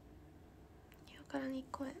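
A quiet room with faint low hum, then a young woman's voice begins speaking in short phrases about a second and a half in.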